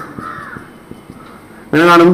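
A bird calling in the background, fading out within the first half-second. Then a quieter stretch of room sound before a man's voice resumes near the end.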